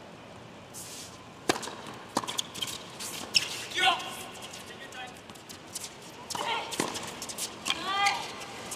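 Tennis rally on a hard court: a string of sharp pops from rackets striking the ball and the ball bouncing, about eight in all and unevenly spaced, with a few short squeaks in between.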